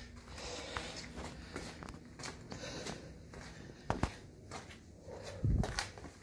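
Footsteps and shuffling on a concrete garage floor, with scattered light knocks and two louder low thumps about four and five and a half seconds in.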